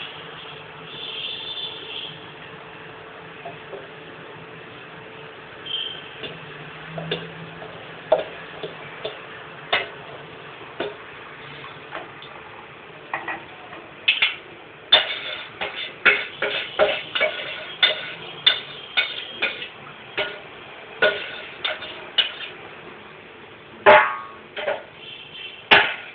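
A ladle stirring wheat-starch liquid in an aluminium pot on the stove, scraping and knocking against the pot's sides in quick irregular clicks that start about halfway through. The stirring keeps lumps from forming.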